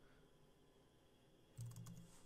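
Near silence, then a few quiet clicks from a computer keyboard near the end as values are typed in.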